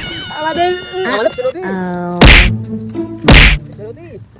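Two loud, sharp whacks about a second apart, slapstick hits in the skit, after a voice cries out in a high, wavering tone. Held musical tones run underneath.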